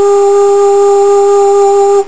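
Homemade three-piece bamboo flute holding one long steady note, which stops abruptly at the end. A faint high-pitched whistling noise sits steadily behind it.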